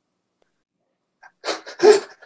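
Silence for over a second, then two short, sharp, breathy vocal bursts from a person, about a third of a second apart, with a sneeze-like quality.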